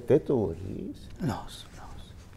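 Speech only: a man's voice speaks a few words, with a falling phrase about a second in, then trails off into quiet room tone.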